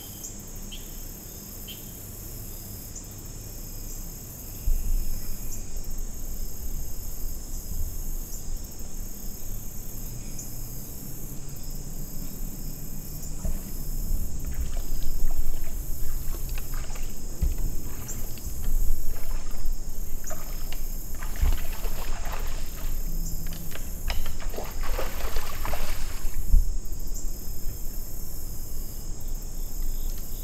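A deer wading through a shallow creek, a run of irregular splashes from about halfway through to near the end, over a steady chorus of crickets and other insects. A low rumble on the microphone sets in about four seconds in.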